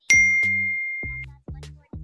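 A single bright electronic ding just after the start, one high tone fading away over about a second, over background music with a steady bass beat.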